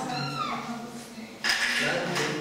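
Marker squeaking on a whiteboard as a line is drawn: a high squeal falling in pitch, then a loud scratchy stroke about one and a half seconds in.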